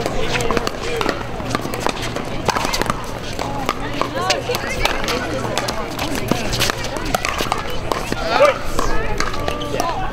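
Sharp pops of pickleball paddles striking a plastic ball during a rally, irregular and overlapping, against steady background chatter of voices.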